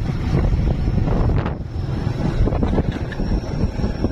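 Wind buffeting the microphone over a motorcycle's engine running steadily while it is ridden along a dirt road.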